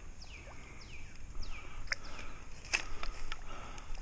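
A songbird singing a run of clear, falling whistled notes, about two a second, in the first half. A few sharp clicks come near the middle.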